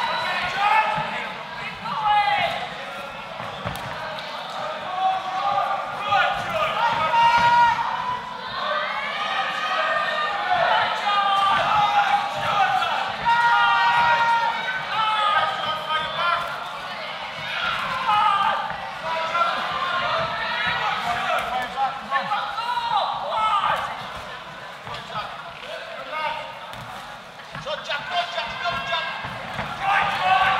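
Boxing bout crowd and corners shouting over one another without a break, with repeated dull thuds of gloved punches landing and feet on the ring canvas.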